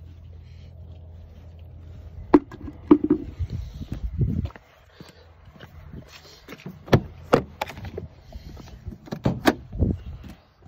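A low steady hum, then a run of knocks and clunks about two seconds in, and more sharp knocks near the end, from handling and movement around a pickup truck's cab and door.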